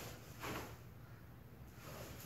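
Quiet room with a faint, brief rustle of a cotton karate uniform about half a second in and again near the end.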